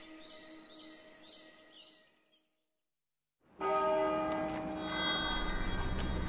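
Faint bird chirps over two steady low tones that fade out, then a second of silence. About three and a half seconds in, church bells start ringing, a loud cluster of many overlapping tones that holds on.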